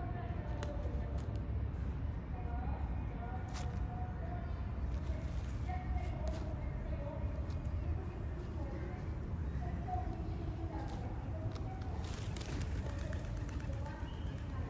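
Indistinct voices over a steady low rumble of city traffic, with a few faint clicks and rustles scattered through, a small cluster of them near the end.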